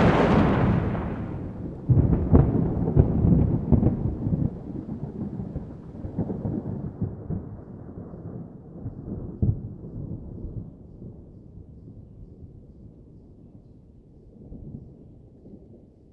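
Thunder: a loud clap dying away, renewed sharp cracks about two seconds in, then a long rolling rumble that fades gradually.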